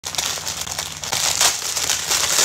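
Thin clear plastic packaging bag crinkling and crackling as it is handled and pulled open by hand, a dense, irregular rustle throughout.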